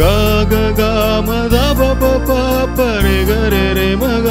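Keyboard music: a lead melody that slides between notes over a bass that changes about every second and a half, with a steady beat of light percussion.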